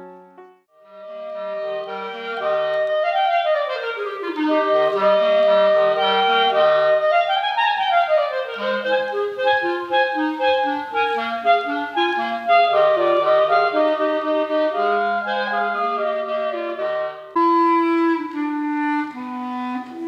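Clarinet trio playing a slow piece in several parts, with held notes and runs up and down the scale. Near the end it cuts abruptly to a different piece.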